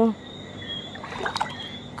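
Soft slosh and trickle of swimming-pool water stirred by feet dangling in it, strongest about a second in, with a faint steady high tone behind.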